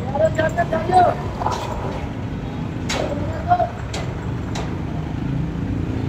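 Steady low rumble of road traffic, with short snatches of nearby talk and a few sharp clicks.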